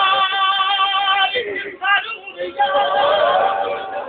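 A singing voice holding long, steady notes, breaking off about a second and a half in and taking up another held note about a second later.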